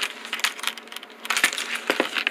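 Hard-shell zippered sunglasses case being handled on a table: a few light clicks and scrapes.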